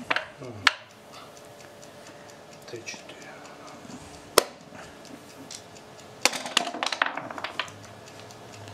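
Backgammon checkers and dice clicking on a board as a move is played: a sharp click near the start, another about halfway, and a quick run of rattling clicks near the end.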